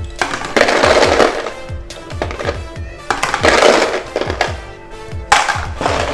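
Ice cubes scooped from a cooler and dropped into a plastic food container, clattering in three bursts about two seconds apart, over background music.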